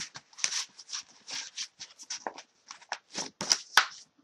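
Hands handling and shuffling flat plastic stamp-set packages: a string of irregular light rustles, slides and clicks, loudest near the end.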